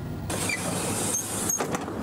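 A school bus runs with its split entry doors swinging open: a hiss for about a second, short squeaks, then clicks and rattles from the door mechanism, over the low rumble of the idling engine.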